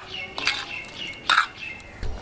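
Birds chirping in the background, with thin high calls held through most of the moment. Two louder, short, harsh sounds come about half a second in and again just over a second in.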